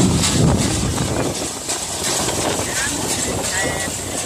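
A Massey Ferguson 20 small square baler at work behind a New Holland T55 tractor: the tractor engine and the baler's mechanism running steadily, a little louder in the first second.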